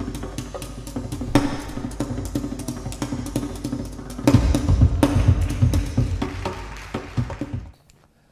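Percussion-driven intro theme music: a steady beat of sharp drum and wood-block-like hits, with heavier low drum hits joining about four seconds in. The music stops shortly before the end.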